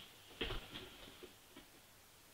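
Faint handling noise from fingers working a fly in a tying vise: one sharp click about half a second in, then a few softer ticks.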